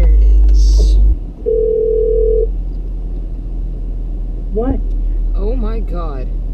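A single steady electronic beep lasting about a second, over a deep in-car rumble that drops away sharply just before it.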